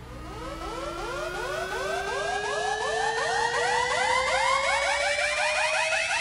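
Electronic riser on the soundtrack: a synthetic tone gliding slowly upward in pitch with a regular pulsing flutter about three times a second, building steadily louder.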